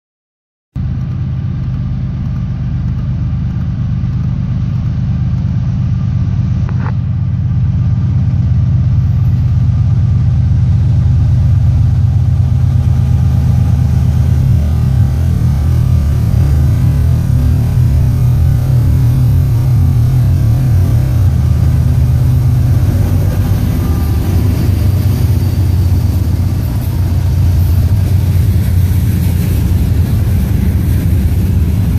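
A lashup of Norfolk Southern diesel-electric freight locomotives passing close by, their diesel engines giving a loud, steady low drone that cuts in suddenly about a second in. Later the engine drone eases as the units go by, and the rumble of the freight cars rolling past on the rails carries on.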